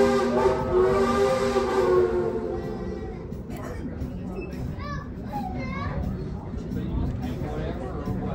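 A moving excursion train: several steady tones sound together for about the first two seconds and fade out, then the train's running rumble goes on under children's voices.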